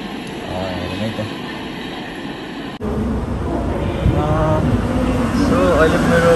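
Walkway ambience with people's voices, then an abrupt cut about halfway through to the louder low rumble of a metro train carriage, with people talking over it.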